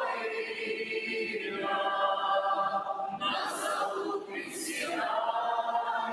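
Massed voices of a choir and standing congregation singing a Russian hymn together, long held notes ringing in a large hall. Two hissing 's' sounds from the many voices stand out about three and a half and four and a half seconds in.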